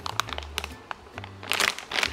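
A plastic soup-base packet crinkling as it is handled: a run of short crackles, loudest near the end, over background music with a low bass line.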